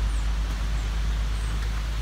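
Steady pouring rain, an even hiss with a constant low rumble from wind on the microphone.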